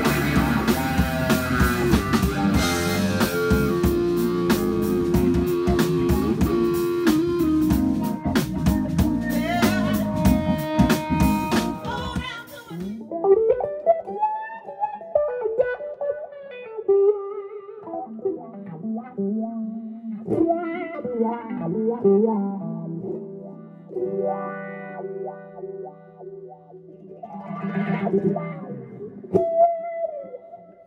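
A live band with drums and electric guitar plays for about the first twelve seconds, then cuts off abruptly. After that, a solo electric guitar is played through a wah-wah pedal, the rocked pedal sweeping each phrase's tone up and down into a vowel-like 'wah'.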